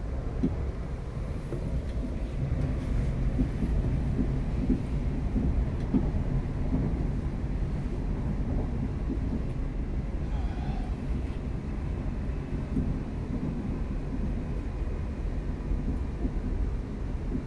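Steady running rumble of a class 350 Desiro electric multiple unit heard inside the carriage: wheels on the track and body noise as the train travels at speed.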